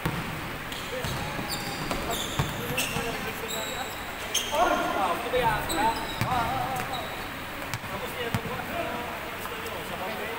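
A basketball bouncing on an indoor court floor during a game, with short high sneaker squeaks, and players shouting about halfway through.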